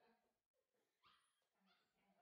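Faint whimper from a Bordoodle puppy about a second in, very quiet overall.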